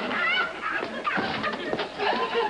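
Sitcom studio audience laughing and hooting, many voices overlapping, in reaction to a gag.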